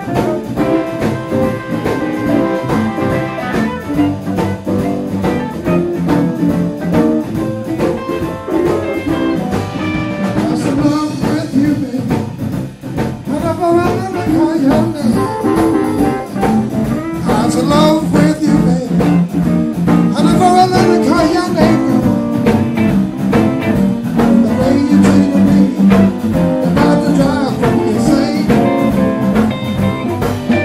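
Live blues band of electric guitars, bass guitar and drum kit playing, with bending electric-guitar lead lines over a steady drum beat.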